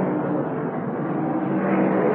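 V8 stock car engines running at racing speed around the track: a steady drone with a sustained tone, growing a little louder near the end.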